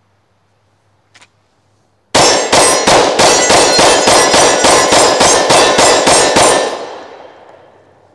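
A Glock 20 10mm pistol fired in a rapid string of about fifteen shots over some four and a half seconds, with steel targets clanging under the hits. The ringing dies away over about a second after the last shot.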